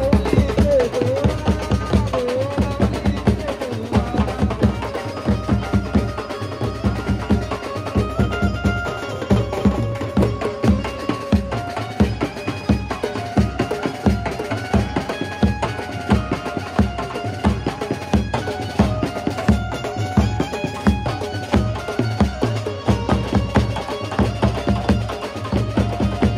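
Live Maharashtrian banjo-band music: an Indian banjo (bulbul tarang) melody over dhol, snare and bass drum beating a steady, driving rhythm.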